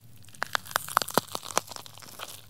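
Faint, irregular crackling: a scatter of sharp clicks, about eight in a second and a half, beginning about half a second in.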